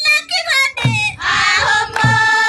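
A group of schoolgirls singing together, with low thumps in time about once a second.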